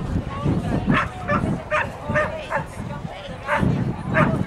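Dogs barking repeatedly, about two barks a second, over a background of people talking.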